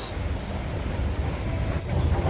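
Steady low rumbling background noise of a busy man-made place, with a faint thin tone near the end.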